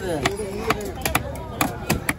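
Cleaver chopping grouper into chunks on a wooden log chopping block: a run of about seven sharp chops at uneven intervals.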